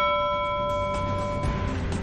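A single struck bell-like chime that rings on with several tones and fades out after about a second and a half. It is the news bulletin's transition sting marking the break between stories.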